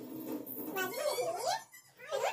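A baby's wordless, fussy vocalizing that wavers up and down in pitch, stopping shortly before the end.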